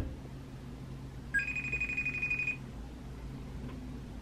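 FaceTime call tone from a phone: a short lower note stepping up to a held, warbling higher tone lasting about a second, over a faint steady low hum.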